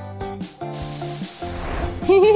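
Aerosol spray-paint can hissing in one burst of about a second, starting partway in, over background music.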